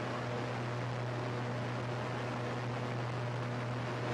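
Steady machinery noise from the wet end of a running paper machine: an even hiss with a constant low hum underneath.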